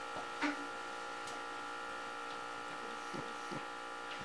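Steady electrical hum with a high whine over low room tone, with a few faint ticks.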